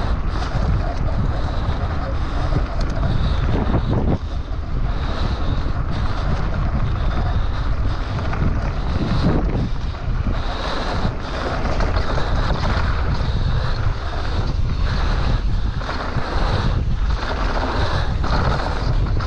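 Wind rushing over the camera microphone of a mountain bike riding fast down a dirt and gravel singletrack, over the steady rumble of the tyres on the trail. Now and then brief rattles and knocks as the bike goes over rough ground.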